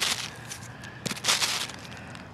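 Rustling and scraping of a plastic sheet, dirt and dug coins being handled and sorted by hand, in short bursts with a longer, louder rustle about a second in.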